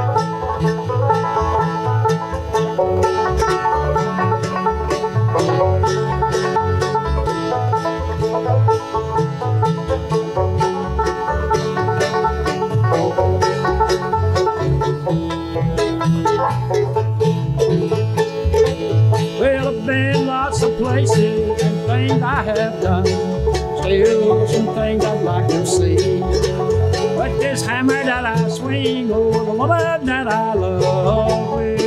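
Acoustic bluegrass band playing an instrumental break without singing: five-string banjo prominent over mandolin, acoustic guitar and a plucked upright bass keeping a steady beat. Quick runs of notes come in over the second half.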